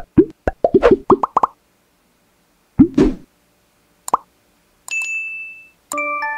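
Sound effects for an animated logo: a quick run of short pops rising in pitch, one more pop about three seconds in, a short click, then a bright ding held for about a second near the end.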